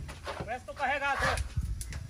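A person's voice calling out briefly, pitched and drawn out, about half a second in, over low background rumble.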